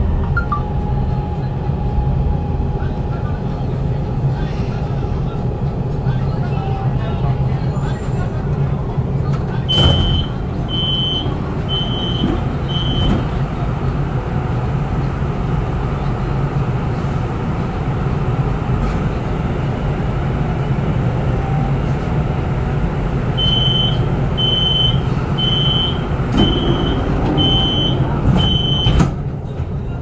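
Inside a light-rail train, a steady low rumble as the train draws in and stands at the platform. About ten seconds in comes a knock and a door chime of four short high beeps as the doors open. Near the end a run of six beeps ends in a knock as the doors close.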